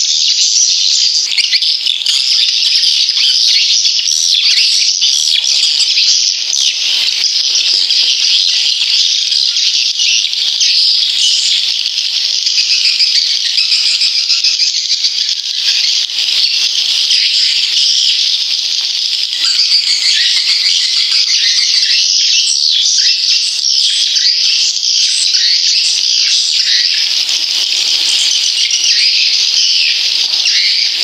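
Recorded swiftlet calls: many birds twittering and chirping in a dense, continuous, high-pitched chatter. It is the kind of 'main sound' recording used as a lure in swiftlet houses.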